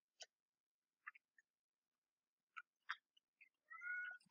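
A domestic cat gives one short, faint meow near the end, over near silence broken by a few faint clicks.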